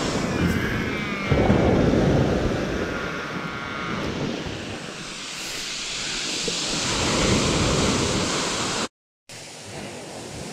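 Surf breaking and washing up a shingle beach, with wind buffeting the microphone. The wash swells about a second in and again around seven seconds, then cuts off abruptly near the end.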